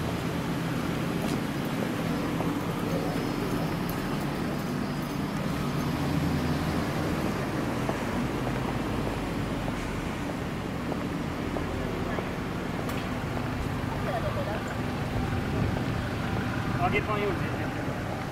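Street traffic ambience: a steady hum of car engines from slow, queued traffic, with indistinct voices of passers-by.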